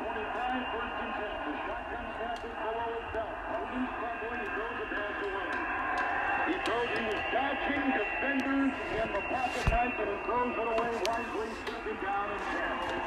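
1926 Freshman Masterpiece tube radio playing a spoken broadcast through a 1920s loudspeaker, its tube filaments running on AA batteries: a thin, narrow-band voice talking without a break, over a faint steady high tone.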